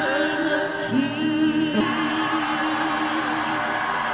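Women's voices and a gospel choir singing a slow song through to a long held chord. A broad crowd noise of cheering and applause swells beneath it from about halfway.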